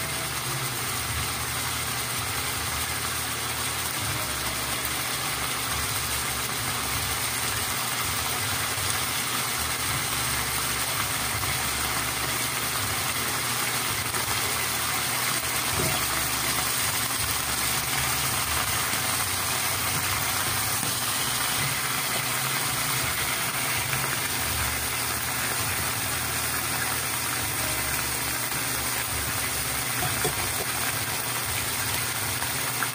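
Stuffed squid sizzling steadily in hot oil in a pan, over a low hum.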